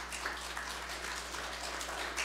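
A soft, steady patter of many small crackles, over a constant low electrical hum.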